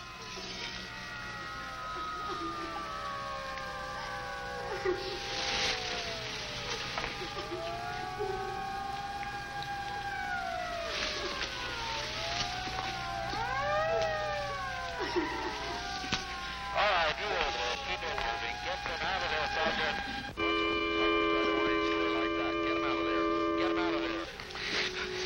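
Several police car sirens wailing at once, their pitches rising and falling and overlapping. About 20 seconds in the wailing stops and a steady held chord of several tones takes over.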